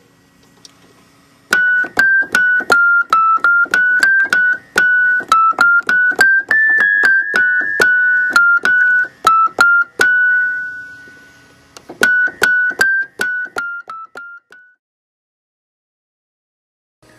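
Wurlitzer 200 electric piano, its high treble notes played in quick succession at about three to four notes a second, stepping up and down among neighbouring keys to check the freshly adjusted hammer's strike line against the notes around it. About ten seconds in, one note is left to ring and die away, then a shorter run follows and stops a little before the end.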